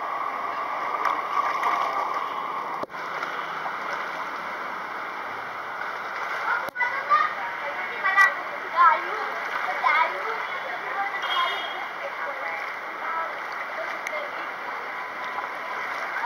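Swimming-pool water splashing and lapping around a camera held at the surface, a steady wet rush with a few short sharper splashes in the middle.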